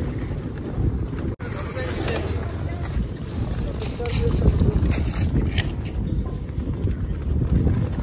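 Wind buffeting the microphone, a loud, uneven low rumble, with faint voices in the background.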